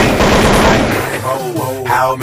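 A rapid burst of machine-gun-style gunfire, a sound effect dropped into a hip-hop track, lasting about a second, after which rapped vocals over the beat come back in.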